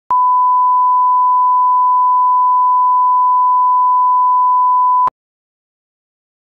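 Broadcast line-up test tone played with colour bars: one steady pure tone held for about five seconds, starting and stopping with a click.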